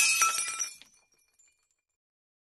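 Glass-shattering sound effect: one sudden crash with high, ringing, tinkling pieces that dies away in under a second.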